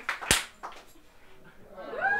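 Audience clapping tailing off, with one sharp, loud clap about a third of a second in.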